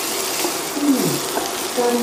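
Shredded Brussels sprouts frying in oil in a stainless skillet, a steady sizzle, while a wooden spatula stirs them. A low voice sounds briefly twice, about a second in and near the end.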